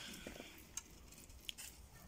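Faint handling sounds as the snapped wooden stub of a spade handle is picked up: a soft rustle with a few small clicks and a short tick about one and a half seconds in.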